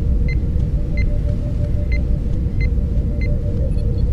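Sci-fi ambient sound bed: a deep, steady rumble under a held mid-pitched hum, with short electronic beeps every half second to a second.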